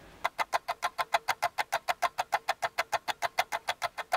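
Rapid, perfectly even ticking, about eight clicks a second: a clock-tick sound effect over a time-lapse.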